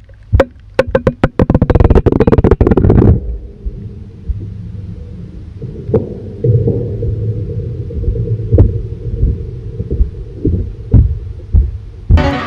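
Pool water heard through a camera microphone that has gone underwater: about three seconds of splashing and bubbling crackle, then a muffled underwater rumble with a few dull knocks.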